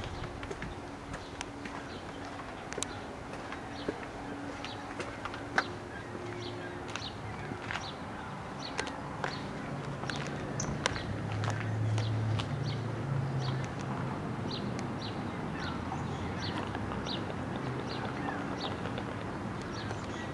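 Outdoor ambience of small birds chirping in short, scattered calls over a low background hum, with a low drone swelling up for a few seconds midway.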